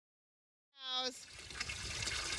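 Silence, then about a second in a brief voice, followed by steady water trickling into a cattle water bin that is refilling after its supply line was reconnected.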